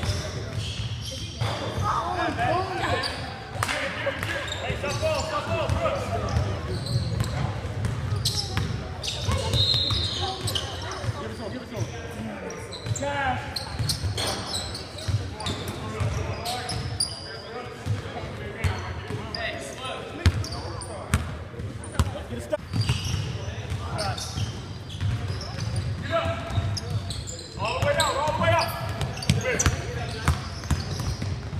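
A basketball dribbling and bouncing on a hardwood gym floor during a game, with players' indistinct shouts and calls across the large gymnasium.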